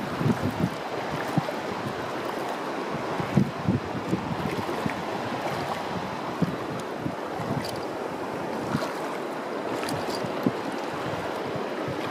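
Feet wading through shallow seawater, making small irregular splashes over a steady rush of wind and lapping water.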